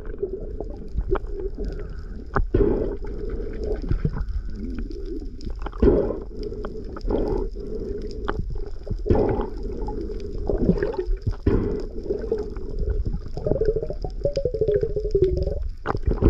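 Underwater sound through a camera's waterproof housing: a steady low rush of water with irregular knocks and clicks, and a short wavering tone near the end.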